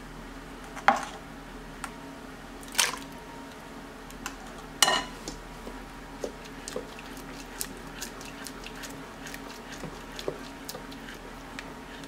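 Wooden spoon stirring mashed sweet potato filling in a stainless steel pot, with sharp knocks of the spoon against the pot about one, three and five seconds in, then lighter scattered ticks.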